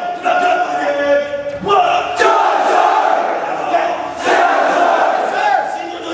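Drill instructors and a platoon of recruits shouting over one another, loud: long drawn-out yells in the first couple of seconds, then a dense mass of many voices yelling at once.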